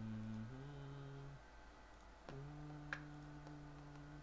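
A low voice humming a slow tune in long held notes, breaking off briefly in the middle, with a couple of faint clicks.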